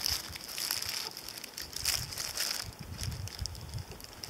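Paper burger wrapper crinkling and rustling in irregular bursts as it is handled, busiest in the first two and a half seconds or so.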